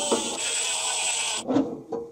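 Cordless drill-driver running steadily as it backs a screw out of an inverter's cover, cutting off about one and a half seconds in.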